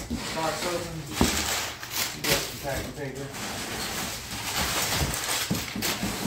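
Cardboard shipping box being pulled open by hand, its flaps scraping and tearing, with a few sharp knocks.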